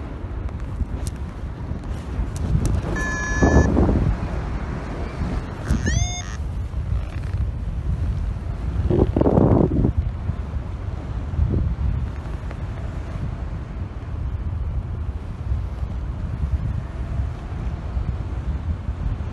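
Airflow buffeting the microphone of a camera carried in paragliding flight, a steady low rumble that swells around nine to ten seconds in. A short steady tone sounds about three seconds in and a short rising tone about six seconds in.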